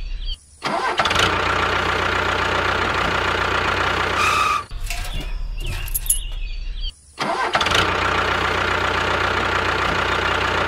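Tractor engine running steadily, cutting out briefly twice, about half a second in and about seven seconds in, and starting up again each time. The same short engine recording repeats about every six and a half seconds.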